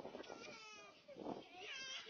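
A young child crying in a string of high, wavering wails whose pitch rises and falls, with a short break about a second in.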